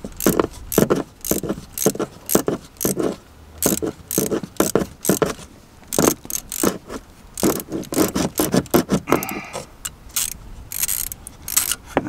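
Ratchet wrench with a 13 mm socket clicking in quick, irregular runs as it undoes a bolt on a gearbox's gear-selector housing.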